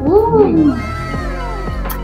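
A cat meowing, a loud rising-and-falling meow in the first half second followed by fainter falling calls, over background music.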